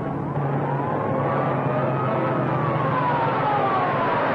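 A car siren wailing, its pitch rising slowly for about two seconds and then falling, over the steady drone of a car engine, heard through an old, hissy film soundtrack.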